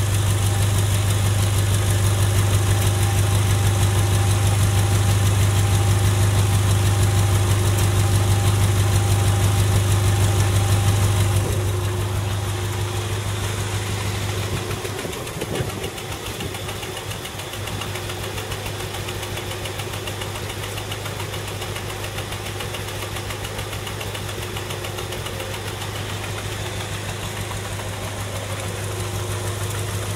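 1983 Honda Civic wagon's four-cylinder engine idling steadily, heard at the exhaust tailpipe as a low, even hum. It is loud with the pipe up close, and drops noticeably about twelve seconds in, when heard from farther back, before rising a little near the end.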